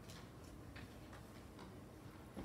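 Near silence: faint room tone with a few faint, irregularly spaced small clicks.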